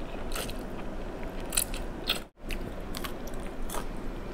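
Close-up eating sounds: thin rice noodles in tom yum soup slurped in off a fork and chewed, with many short wet clicks from the mouth. The sound breaks off briefly a little past halfway, then the chewing carries on.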